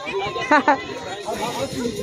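Speech only: voices talking, with two short louder bursts about half a second in.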